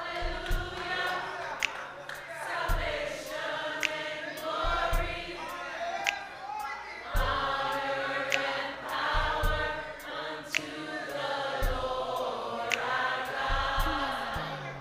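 Gospel choir and congregation singing a worship song over a steady beat, with a sharp hit about every two seconds and low thuds between them.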